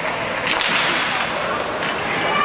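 A single sharp crack from play on the ice about half a second in, ringing on in the rink's echo, over a steady wash of arena noise.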